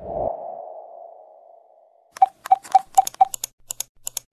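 Intro-animation sound effects: a low thump with a tone that fades over about two seconds, then a quick run of clicks with short beeps, about four a second, followed by a few scattered clicks.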